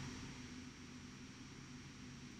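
Quiet room tone: a faint steady hiss with a low hum and no distinct sound.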